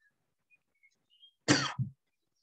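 A man coughs about one and a half seconds in: one sharp burst followed at once by a shorter, lower one.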